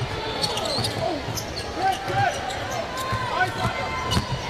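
Basketball game in play on a hardwood court: the ball dribbled in repeated thuds, sneakers squeaking in short bursts, and arena crowd noise underneath.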